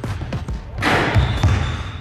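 A basketball dunk: a short rattling crash at the hoop about a second in as the ball is slammed through, followed by a few dull thuds of the ball and landing feet on the hardwood court.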